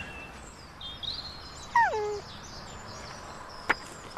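Outdoor ambience with small birds chirping, and one falling animal call about two seconds in. A single sharp click comes near the end.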